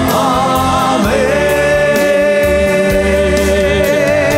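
A group of men singing a Malayalam gospel worship chorus of "Hallelujah … Amen" together, holding long notes with a change of note about a second in, over electronic keyboard accompaniment.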